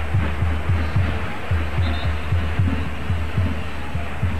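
Stadium crowd noise with a bass drum in the stands beating a fast, even rhythm of about three to four deep thumps a second, over a low steady hum.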